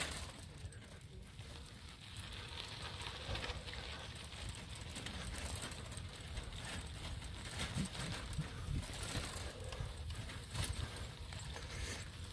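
Faint footsteps on dry, dormant grass, irregular, under a steady low rumble.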